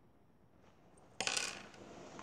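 Near silence, then a sudden short burst of noise a little over a second in, followed by a few faint clicks.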